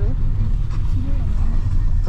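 Steady low rumble of a car driving along a road, heard from inside the cabin, with a faint voice briefly in the middle.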